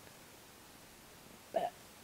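Quiet room tone, broken about one and a half seconds in by one short vocal sound from a woman.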